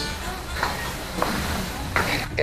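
Faint, indistinct voices over steady room noise in a hall.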